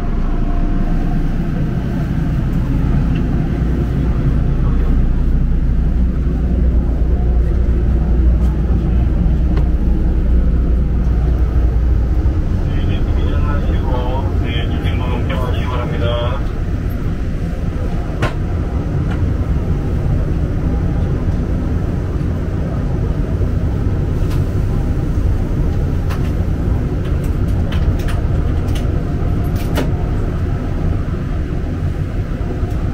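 Daegu Line 3 monorail train running: a steady low rumble that eases a little after about twelve seconds, with a short run of pitched tones about halfway through.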